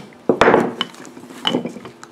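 Wooden wedge knocked and rubbed as it is coated with a wax stick: a sharp knock and scrape about half a second in, then lighter wooden taps and a small clink about a second later.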